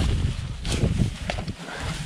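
Wind rumbling on the microphone, with rustling and a few light crunches of footsteps through dry grass.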